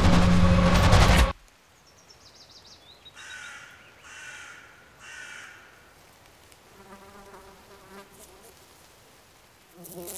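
Loud music breaks off suddenly about a second in. Then a crow caws three times, about a second apart.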